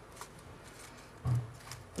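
Faint rustling and light taps of card and paper as decorated tags are pressed into a cardboard box, with one short low sound a little over a second in.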